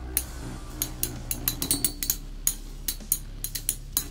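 Metal Fight Beyblade spinning tops clinking sharply and irregularly, several times a second, as their metal wheels strike each other and the plastic stadium during a three-way battle.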